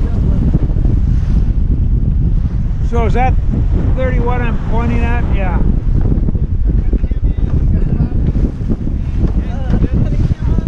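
Wind buffeting the microphone of a racing sailboat heeled upwind, with water rushing and splashing along the hull. A few short voice calls come through in the middle.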